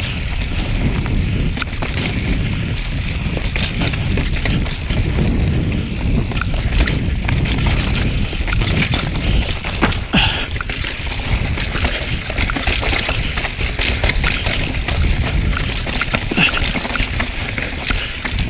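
Mountain bike riding down rocky, rooty dirt singletrack, heard from a camera mounted on the bike: a steady low rumble of wind buffeting the microphone and knobby tyres rolling over dirt, with frequent sharp clicks and knocks of the bike rattling over rocks and roots.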